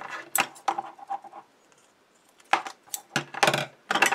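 Red-liner double-sided tape pulled off its roll and pressed onto a cardstock strip: scratchy crackles and clicks for the first second and a half, a short pause, then another scratchy burst about two and a half seconds in.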